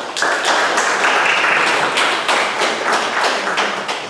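An audience applauding, dense clapping that starts just after the beginning, is loudest in the first two seconds and thins out toward the end.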